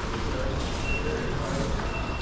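Busy supermarket hubbub: distant voices over a steady noise, with a short high beep recurring about once a second.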